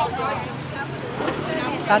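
Several people talking at once in a crowd, their voices fairly quiet, over a steady background hum of street noise; a louder voice starts near the end.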